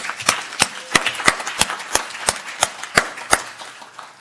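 Applause: a room of people clapping, with one nearby pair of hands clapping loudly and evenly about three times a second. The clapping dies away near the end.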